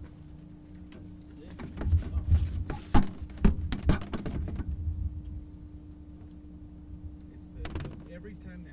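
A burst of knocks and clatter lasting about three seconds, loudest around its middle, over a steady low hum.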